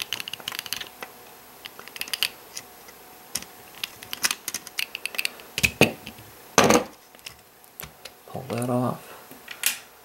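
Small screwdriver working a screw out of the plastic truck of a model freight car: a run of light, irregular clicks and ticks over the first five seconds, then a single louder knock about six and a half seconds in.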